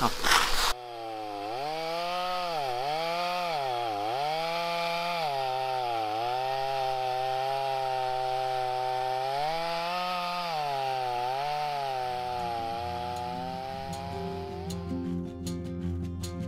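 A Stihl petrol chainsaw cutting through a thick beech log at full throttle. Its engine note dips and recovers again and again as the chain bites into the wood. At about twelve seconds it gives way to guitar music.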